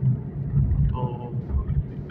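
Low, steady rumble of a car's engine and tyres on the road, heard from inside the cabin while driving at speed.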